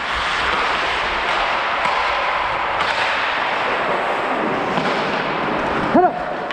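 Ice hockey skates gliding and carving on rink ice during play, a steady hiss of blades and rushing air at a helmet-mounted microphone. A brief loud sharp sound comes right at the end.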